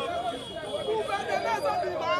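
Speech: a man talking animatedly to a crowd, with other voices chattering around him.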